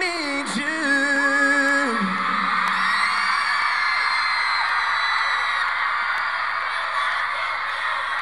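A male singer with band backing holds a long sung note that steps down in pitch and ends about two seconds in. After that a large audience screams and cheers.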